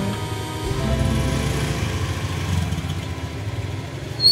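A small Honda motor scooter's engine running as the scooter pulls away, its low rumble rising about a second in, with guitar music playing alongside.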